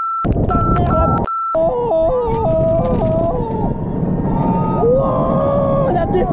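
Roller coaster riders screaming, several voices wavering and sliding in pitch, over heavy wind rumble on the camera's microphone. In the first second and a half a few short beeps of an edited-in bleep tone cut over the sound.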